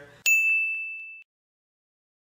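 A single high-pitched ding sound effect marking a section title card. It strikes sharply about a quarter second in, rings for about a second as it fades, and is followed by dead silence.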